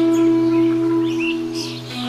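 Bamboo flute (bansuri) holding one long note that fades just before the end, over a low steady drone, with birds chirping in the background.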